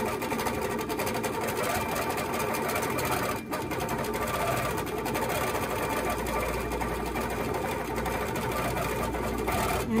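Handi Quilter Capri long-arm quilting machine stitching steadily in cruise mode, running on its own at a set speed with a fast, even needle rhythm as the fabric is guided under it. There is a brief dip about three and a half seconds in.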